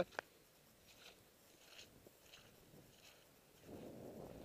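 Near silence: a single sharp click just after the start and a few faint soft sounds. Near the end, a low rush of wind on the microphone builds up.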